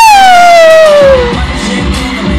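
A high voice holding one long, very loud note that slides down about an octave and fades out after about a second and a half, over pop concert music.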